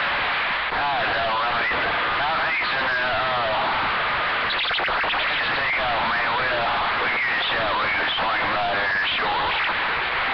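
CB radio receiving a distant station: a steady hiss of static with broken-up voices coming through it, too garbled for words to be made out.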